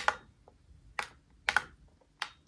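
A few short, sharp plastic clicks and taps from handling a Boogie Board Blackboard LCD writing tablet and its stylus during button presses and erasing: one at the start, one about a second in and a quick pair about a second and a half in, with fainter ticks between.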